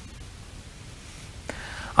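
Faint, steady background noise in a lull with no speech, with a small click about one and a half seconds in. A man's voice starts right at the end.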